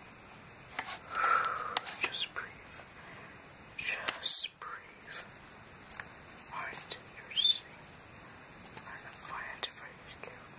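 Soft whispering mixed with short paper rustles and light taps as a paper envelope and a small plush bear are handled.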